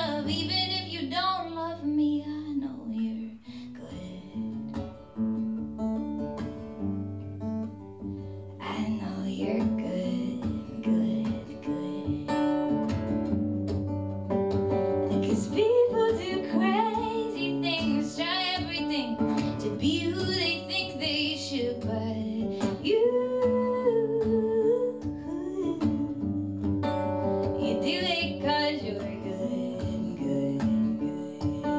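A woman singing live into a microphone, accompanied by a strummed acoustic guitar. The singing drops back for a few seconds soon after the start and comes in strongly again about nine seconds in.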